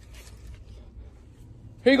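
Faint scraping and rustling of a plastic drinking straw being pushed down into a plastic tub of frothy chocolate milk, over a steady low hum.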